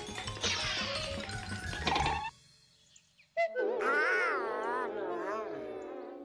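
Cartoon soundtrack: a busy orchestral passage with a quick falling run, which breaks off into a second of near silence. Then a wobbling, warbling pitched sound with a wide vibrato carries on to the end.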